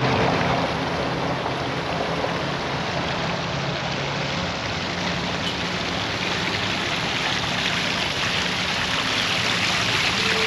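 Steady rush of splashing, running water, with a faint low hum beneath it.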